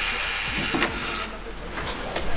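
A door being opened, its latch clicking a little under a second in, over a steady hiss that stops soon after.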